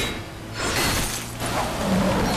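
Cartoon sound effect of something shattering and crackling, as sparks and shards fly from a spiked collar hit by a water blast. A short burst comes at the start and a longer one about half a second in.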